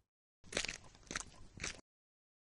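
Faint crunching and rustling, a few uneven crunches over about a second and a half, as a cartoon sound effect.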